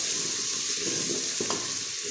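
Chopped onion and tomato sizzling in hot oil in a pressure cooker as they are stirred with a wooden spoon. A single light knock comes about one and a half seconds in.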